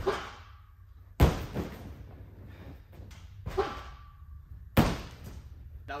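A gymnast's tumbling on a sprung tumble track and landing on a crash mat: four sharp thuds, the loudest about a second in, each ringing on briefly in the large gym hall.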